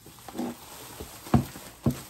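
Two dull knocks about half a second apart, a little over a second in, from items being moved about while unpacking shopping, preceded by a short hum from the person.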